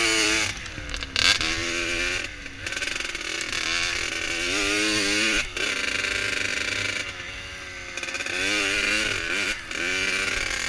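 Two-stroke 80cc engine of a Kawasaki KX80 dirt bike being ridden hard: revs climb in pitch again and again, then fall away sharply about five times as the throttle is chopped or a gear is changed.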